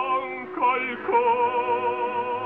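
An operatic singer holds a high note with wide vibrato over the orchestra, moves through a short passage about half a second in, then holds a new high note. The old live recording sounds dull, with no treble above about 4 kHz.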